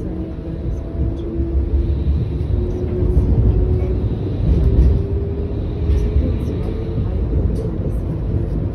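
Modern tram running, heard from inside the passenger car: a steady low rumble with a faint whine that slowly rises in pitch, growing louder toward the middle.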